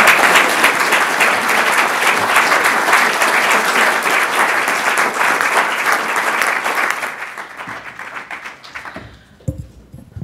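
Audience applauding, a dense steady clapping that starts to die away about seven seconds in and has faded out by about nine seconds.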